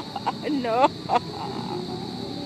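A woman's wailing, crying voice drawn out on the word "no" in the first second, with a short last cry a little over a second in. After that her voice stops and only a quieter steady background remains.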